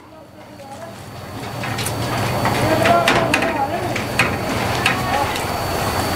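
Scattered small clicks and clinks from hands working puris on steel plates, under low background voices. The sound fades up over the first couple of seconds.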